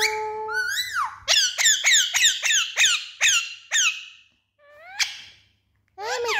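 Alexandrine parakeet finishing the mimicked word "me", then a quick run of about nine sharp squawks, each sliding steeply down in pitch, about four a second. A single rising call follows near the end.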